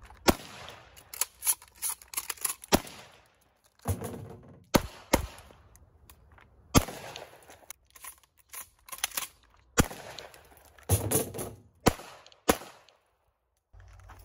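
Shotgun fire: well over a dozen shots at uneven spacing, some in quick pairs, each with a short echo.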